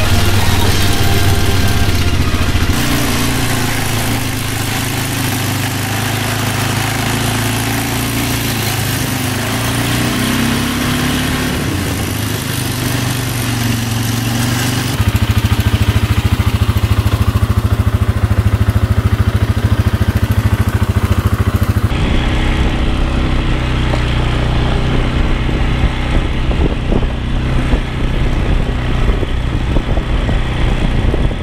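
Polaris ATV engine running as the quad is ridden over a dirt and grass trail. The engine sound changes abruptly about 3, 15 and 22 seconds in, with a fast, even throb in the middle stretch.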